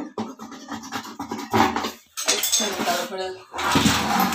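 A plastic bucket being scrubbed with a brush to get stuck-on paint off, in irregular rough scraping strokes, with hollow knocks as the bucket is handled and turned.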